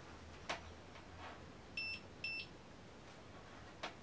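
UNI-T UT60A digital multimeter giving two short, high-pitched beeps about half a second apart, with a few light clicks from handling the meter and its test probes.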